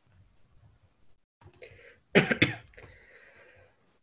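A person coughing twice in quick succession about halfway through, followed by a short breathy trail.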